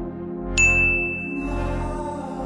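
A bright ding sound effect about half a second in, one clear ringing tone that holds for nearly a second, over steady background music.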